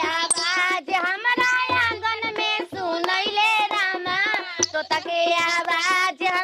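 A woman singing a devotional puja song in a high, wavering voice, in phrases with short breaths between them.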